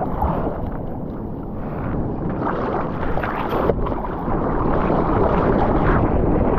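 Water sloshing and splashing around a surfboard close to a board-level GoPro as the surfer paddles, with a constant rush of water; it grows louder over the last couple of seconds as the paddling picks up into a wave.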